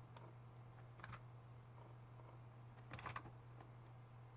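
Faint computer keyboard keystrokes and mouse clicks: a click or two about a second in and a quick run of keystrokes about three seconds in, over a steady low hum.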